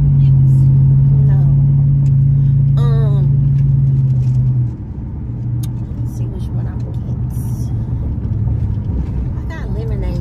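Pickup truck driving, heard inside the cab: a steady low engine drone with road rumble. The drone drops off abruptly about halfway through, leaving a quieter rumble. A brief hum of a voice comes in about three seconds in.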